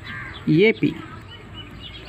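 Birds calling in the background, with hazy calls near the start and short chirps in the second half, while a man's voice says "AP" once about halfway through.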